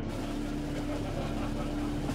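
A steady low drone with a noisy background haze that runs on without a break.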